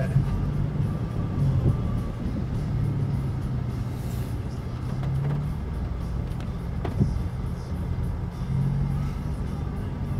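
Ford Ranger pickup's engine running low and steady, heard from inside the cab as it drives slowly through floodwater, with a single click about seven seconds in.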